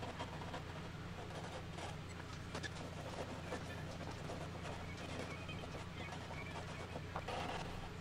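Faint scratchy strokes of a hand file on a wooden mahogany guitar neck heel, over a steady low electrical hum.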